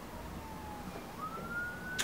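Faint siren wail, a single tone that slowly falls in pitch, then about a second in climbs again.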